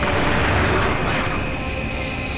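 Cartoon sound effects of missiles streaking through space: a steady jet-like rushing roar with falling whooshes near the start and about a second in.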